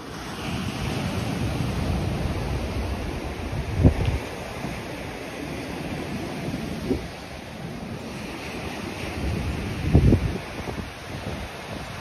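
Surf breaking and washing up a sandy beach, with wind buffeting the microphone in gusts; the strongest gusts come about four seconds in and again about ten seconds in.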